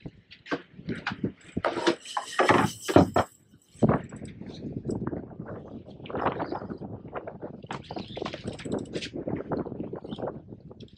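Irregular knocks and rattles, with a loud burst of hiss in the first few seconds, as a fish is fought on a heavily bent spinning rod from the bow of a boat.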